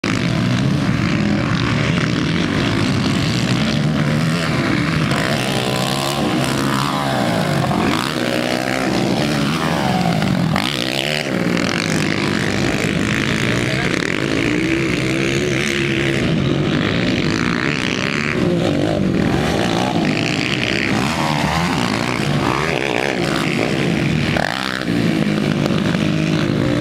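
Racing quad bike engines revving, their pitch rising and falling again and again with throttle and gear changes as they work around a dirt track.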